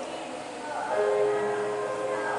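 Church music in a reverberant hall: a soft murmur of sound, then a held chord of several steady notes swelling in about a second in.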